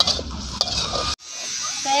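Metal spatula scraping and clinking against a wok as cassava leaves are stir-fried, over a steady low rumble, cutting off suddenly about a second in; a voice starts near the end.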